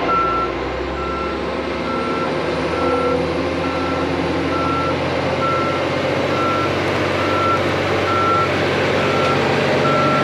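Backup alarm on a John Deere crawler dozer beeping steadily, about one beep a second, as the dozer reverses with its tile plow. The dozer's diesel engine runs underneath the beeps.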